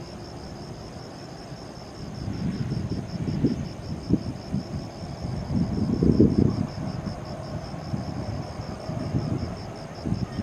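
Wind gusting against the microphone in uneven low buffets, loudest about six seconds in, over insects chirping in a steady, evenly pulsing high note.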